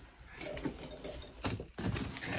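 Handling of a large cardboard box: scattered light clicks and rustles, with a couple of sharper knocks near the end.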